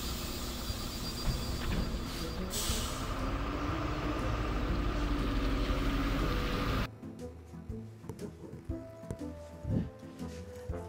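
City bus pulling away, its diesel engine running with a short hiss of compressed air from the brakes about two and a half seconds in, under background music. The sound drops off abruptly about seven seconds in.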